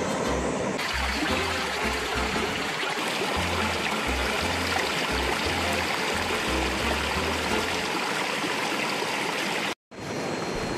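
A stream rushing over rocks, a steady noise of flowing water that grows brighter just under a second in, with background music playing underneath. The sound drops out abruptly for a moment just before the end.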